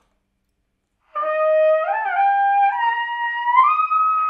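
Trumpet played softly in the high register: after about a second of silence it starts and slurs upward in about four steps, ending on a held high note. A small, controlled sound, demonstrating high notes played quietly with good breath control.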